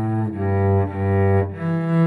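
Solo cello played with the bow, improvising: a few sustained low notes with rich overtones, the bass line stepping up in pitch near the end.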